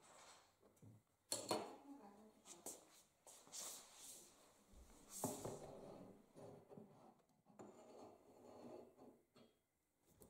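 Near silence with faint, scattered knocks and rustles of handling, from a spirit level and tape measure being set on and moved across a monitor's plastic back.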